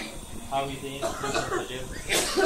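Coughing amid men's voices talking in a small room. An exhausting cough is among the symptoms of chlorine gas poisoning that the doctor lists for these patients.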